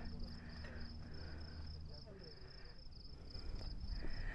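Insects chirping: a steady, high-pitched trill pulsing evenly several times a second, over a faint low rumble.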